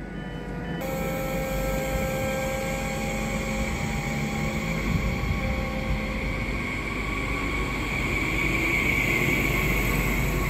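Double-deck regional train pulling out of the platform: a steady rumble of wheels on rail that grows as the coaches pass, with a faint rising whine from the traction near the end.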